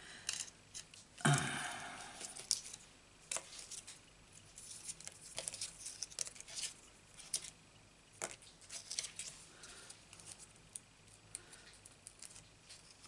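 Paper-craft handling: light rustles, taps and clicks as die-cut cardstock circles are picked up, handled and set down on a card panel, with a louder knock and rustle about a second in.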